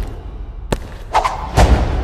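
Cinematic title-reveal sound design: a deep low rumble with three heavy impact hits, the last and loudest about a second and a half in.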